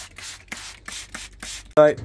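Hand trigger spray bottle misting mushrooms: a quick run of short hissing squirts, about six a second, stopping just before a man's voice near the end.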